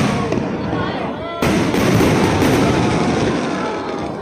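Aerial fireworks bursting: a loud burst at the very start and another about a second and a half in, each followed by a dense crackling as the sparks spread and burn out.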